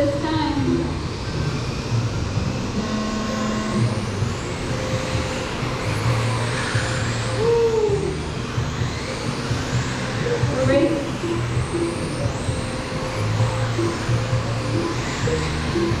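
Several radio-controlled race cars running laps, their motors whining and sweeping up and down in pitch again and again as they accelerate and slow around the oval.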